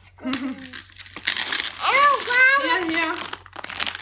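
Crinkling of a foil toy packet being handled and opened by hand, in a run of quick crackles. A child's voice calls out briefly over it.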